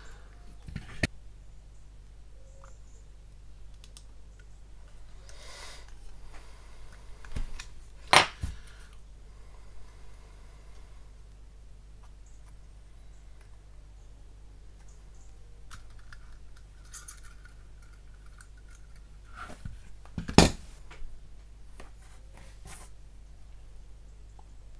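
Photo-etch bending tool and small metal hand tools being worked and handled on a bench: quiet scraping and sliding, with two sharp clicks, one about eight seconds in and a louder one about twenty seconds in.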